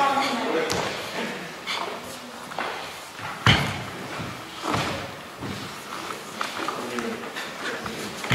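Sharp snaps and thumps from karate kata (Bassai Dai) being performed: stiff gi fabric snapping on strikes and bare feet stepping and planting on a wooden sports-hall floor, a dozen or so irregular hits with the loudest about three and a half seconds in. The hits ring on in the reverberation of a large hall.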